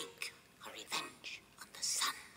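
Whispered vocal from the song with the accompaniment dropped out: a few short, breathy phrases with pauses between them, the loudest near the end.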